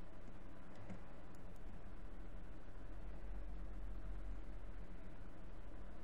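Steady low electrical mains hum over room noise, with a few faint clicks about a second in.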